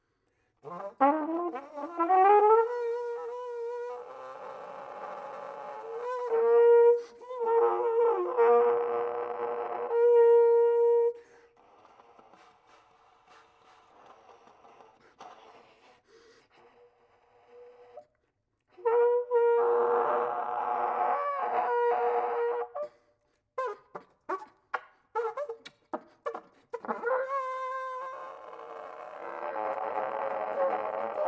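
Solo flugelhorn playing contemporary music with extended techniques: a note slides up and is held with airy breath noise mixed into the tone, followed by a quiet breathy stretch. More held notes follow, broken near the end by a run of short, sharp clicks and pops.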